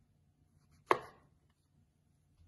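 A single chop of a knife slicing through a mushroom onto a wooden cutting board, about a second in.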